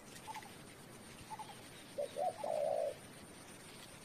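Spotted dove cooing: a couple of faint short notes, then about two seconds in a louder phrase of two short coos and a longer drawn-out coo.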